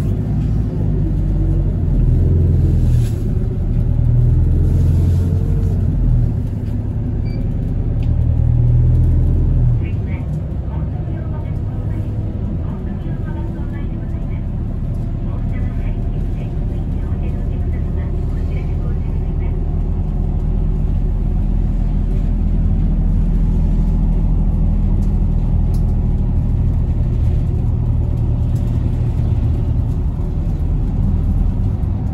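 Steady low rumble of a moving bus's engine and road noise, heard inside the bus. Louder for the first ten seconds or so, then easing to an even, lower drone.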